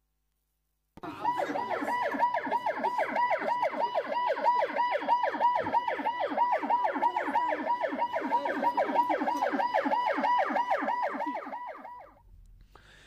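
Emergency vehicle siren in a fast yelp, its pitch sweeping up and down several times a second. It starts about a second in and runs steadily until it cuts off at the end.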